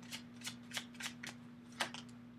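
Tarot deck being shuffled by hand: a few soft, irregular card flicks.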